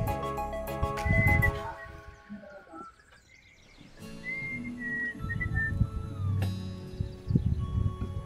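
Background music with a whistled melody over held tones. It drops almost to silence for about a second and a half midway, then starts again.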